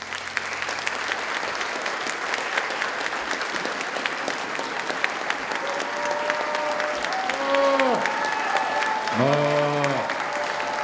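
A large audience applauding after a song ends, the clapping building slightly. In the second half a few voices call out over it.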